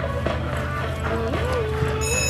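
Hoofbeats of a cantering show-jumping horse on grass, dull knocks about every half second, under background music with held, gliding notes.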